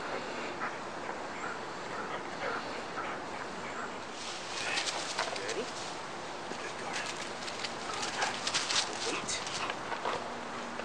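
Dry fallen leaves crunching and rustling under a man's feet and a Belgian Malinois's paws from about four seconds in, loudest near the end, with a dog's short high whines before it.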